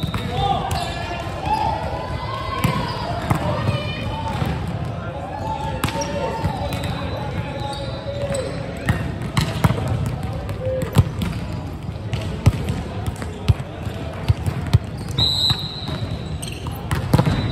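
Volleyball rally on an indoor hardwood court: players' voices calling, mostly in the first half, and many sharp smacks of the ball being hit and landing, coming thicker and louder in the second half.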